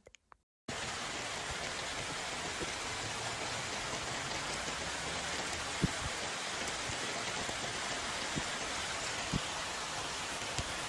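Steady rain falling, an even hiss that starts abruptly just under a second in. A few single drops tick sharply in the second half.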